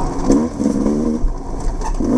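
Off-road dirt bike engine revving up and down as the throttle is opened and closed through tight trail, its pitch rising sharply about a third of a second in, holding, then dropping and rising again near the end.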